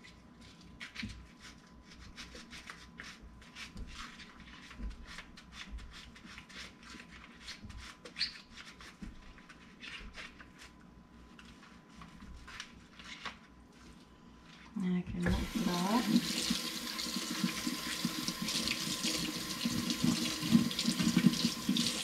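Soapy rag rubbed over a sink stopper by rubber-gloved hands, faint rubbing with small clicks. About fifteen seconds in, the kitchen faucet is turned on and water runs hard into the sink.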